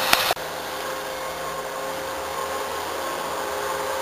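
Steady rushing background noise with a faint steady hum, following a sharp click and an abrupt cut just after the start.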